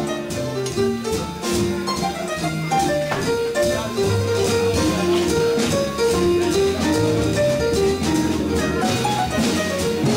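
Live small-group jazz: piano melody over double bass notes and a drum kit with steady cymbal strokes.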